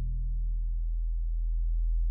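Sine-like sub-bass synth holding one deep, steady note on its own, part of a future bass sub-bass line.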